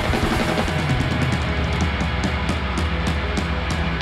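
A live rock band playing: drum kit, electric guitars and bass, with sharp strikes about four a second through the second half.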